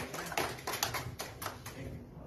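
A run of light, irregular taps and clicks, about a dozen in two seconds, thinning out near the end.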